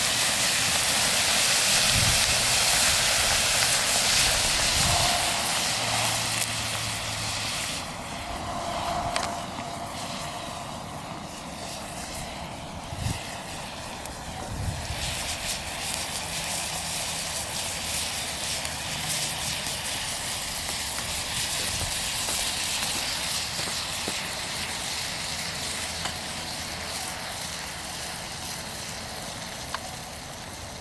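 Manganese dioxide–aluminium thermite burning slowly in a clay flower pot: a steady hiss, loudest over the first several seconds and dropping off about eight seconds in, with a few sharp pops along the way.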